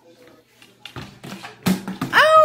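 A plastic bottle knocking on a wooden tabletop as a cockatoo tosses it about: a few light knocks, then a louder clatter near the end.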